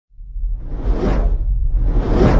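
A cinematic whoosh sound effect over a deep low rumble, swelling out of silence to a peak about a second in and then easing off.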